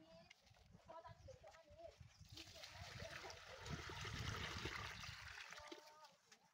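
Water poured from a bucket into a large kadai (wok), a steady splashing pour of about three and a half seconds that builds and then tapers off just before the end.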